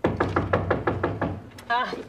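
Knocking on a back door: a quick, even run of about nine knocks over a second and a half, announcing a visitor.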